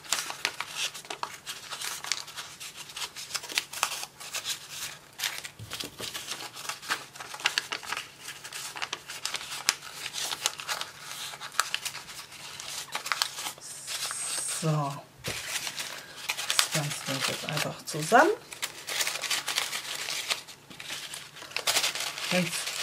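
Thin coffee-filter paper crinkling and rustling in a long, irregular run of small crackles as it is pinched and gathered into petals by hand.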